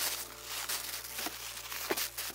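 Crumpled kraft packing paper crinkling and rustling as it is pulled out of a cardboard box by hand, in an irregular run of rustles with a couple of small crackles.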